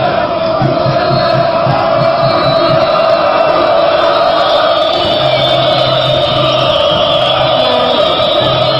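Large crowd of football supporters chanting in unison, a loud, continuous chorus of many voices.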